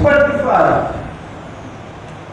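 A voice calls out a brief exclamation during the first second, then only steady low background noise of the hall remains.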